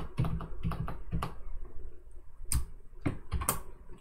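Computer keyboard keystrokes: a quick run of key presses in the first second or so, a short pause, then a handful more strokes near the end, as the cursor is moved and a tag is typed into a text editor.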